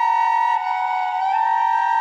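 Pre-Hispanic West Mexican shaft-tomb flute playing held notes, two close tones sounding together with an airy timbre. The pitch steps about half a second in and again past halfway.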